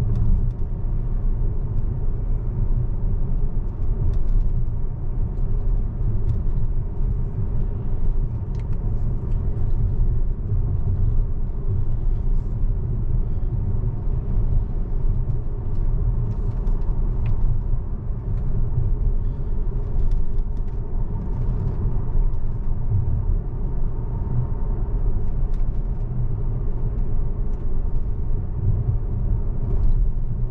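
Steady road and tyre noise heard from inside the cabin of a Tesla electric car cruising at about 35 mph, a low, even rumble with no engine sound.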